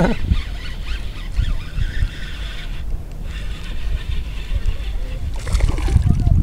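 A hooked bass being fought on a spinning rod and reel. About five and a half seconds in, the fish splashes at the surface as it throws the hook.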